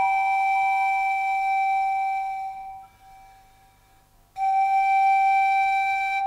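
Romanian nai (pan flute) playing slow music. One long held note fades away nearly three seconds in, and after a short pause a second long note at the same pitch begins.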